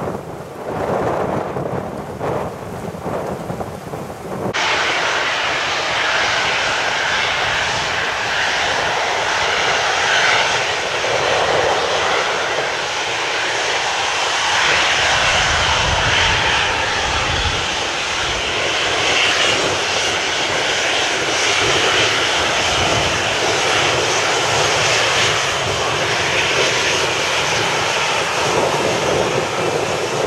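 Jet airliner engines running as a Southwest Boeing 737-700 rolls along the runway: a loud, steady noise with a deeper rumble swelling briefly about midway. The sound cuts abruptly about four and a half seconds in from a quieter stretch of another airliner on the runway.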